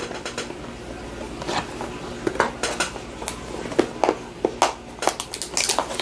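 Hands handling a shrink-wrapped cardboard trading-card box just cut open with a knife, making irregular light clicks, taps and plastic crinkles.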